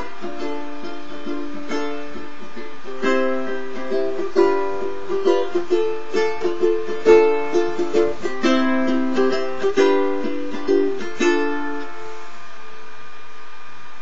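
Lanikai ukulele strummed solo as the instrumental ending of a song: steady chords, then sharper accented strums from about three seconds in. A last chord rings out and fades about twelve seconds in.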